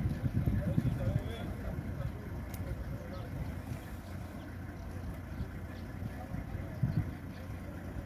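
Indistinct voices of people talking nearby over a low, uneven rumble, louder in the first second or so.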